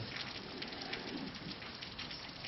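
Faint, steady hiss of room noise in a classroom, with no speech and no distinct events.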